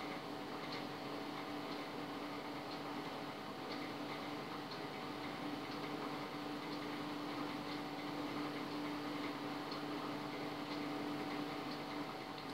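Samsung microwave oven running at full power, a steady hum with faint ticks about once a second.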